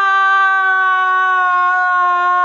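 A woman's voice holding one long, loud, high note, like a drawn-out call, sliding slightly down in pitch.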